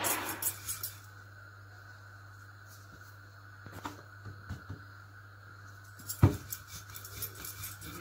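Wooden rolling pin rolling out paratha dough on a wooden chopping board: quick rhythmic strokes of the pin against the board, stopping about a second in and starting again near the end, with a single sharp knock a little after halfway.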